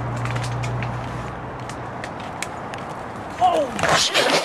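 Young men's wordless voices whooping and laughing, with one cry falling in pitch near the end, over scattered ticks and a steady low hum in the first half.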